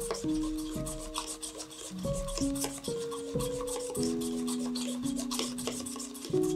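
A small utensil scraping and clicking against the inside of a cup in quick, irregular strokes as pigment is stirred into a paste with a splash of water, over soft background music with held notes.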